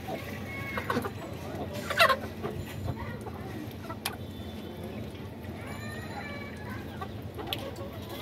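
Desi chickens clucking and calling in short repeated phrases, with one loud sharp squawk about two seconds in.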